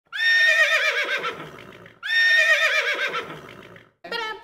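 A horse whinnying twice, the same whinny played back to back. Each is a quavering call that fades out over about two seconds.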